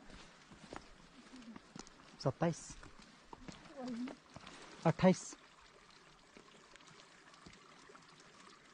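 Footsteps on a rocky, frosty mountain trail with a faint trickle of water, broken by short voice sounds: one about two seconds in and a louder one about five seconds in.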